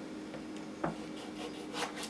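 A knife scraping across a whetstone in short strokes, with a sharp click about a second in.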